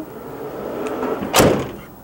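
Sliding side door of a 2010 Chevrolet Express cargo van rolling shut along its track, then latching closed with one loud thump about one and a half seconds in.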